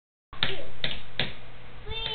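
A child drumming on a wooden tabletop with pencils: three sharp taps about 0.4 s apart. A high child's voice starts near the end.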